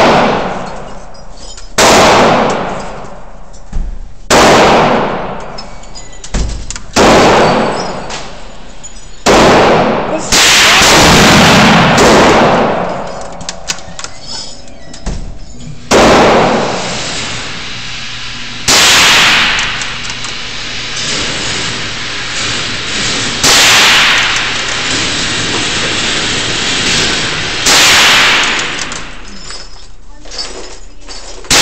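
A scoped .22 LR rifle firing single shots every two to five seconds, about ten in all. Each shot has a long echoing tail in the enclosed range. A few fainter bangs fall between the main shots.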